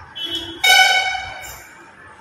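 A horn honking: one steady blast of about a second, starting about half a second in, with a weaker sound just before it.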